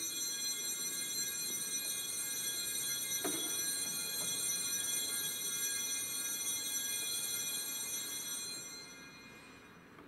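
Altar bells ringing at the elevation of the host during the consecration: a sustained shimmer of high bell tones that fades away near the end.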